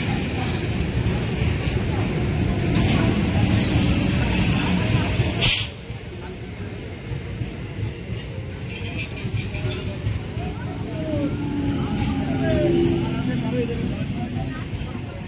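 Electric multiple-unit local train rolling slowly alongside the platform, its wheels and coaches rumbling, with a short sharp hiss of air about five and a half seconds in, after which the running noise drops to a lower rumble. People's voices are heard around the train.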